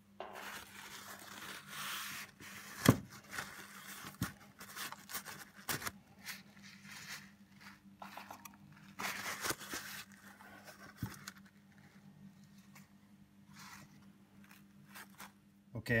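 Rubbing and scraping on the metal chassis of a 1963 Egmond V1020 tube amp as it is cleaned. The sound comes in bursts of scrubbing, scattered with small clicks and knocks; the loudest knock falls about three seconds in.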